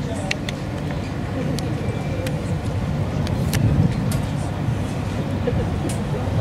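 Open-air ambience: a steady low rumble with faint distant voices and a few short sharp clicks.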